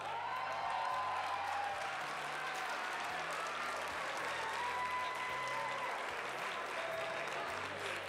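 Audience applause, steady throughout, with a few held cheers rising above it.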